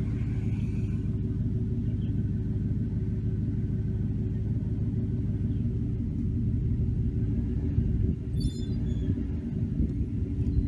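A steady low rumble with a constant low hum, with a brief high chirping sound about eight and a half seconds in.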